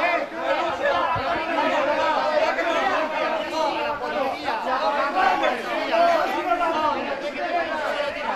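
Several voices talking over one another at once, a tangle of overlapping speech in an argument among bus passengers.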